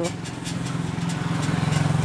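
An engine running steadily with a low hum, growing gradually louder.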